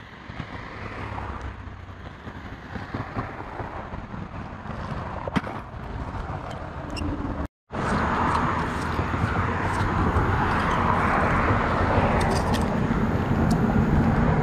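Road traffic passing on the wet road beside the bridge: a steady tyre-and-engine rush that builds gradually, cuts out suddenly for an instant about halfway through, and comes back louder, with a few light clicks over it.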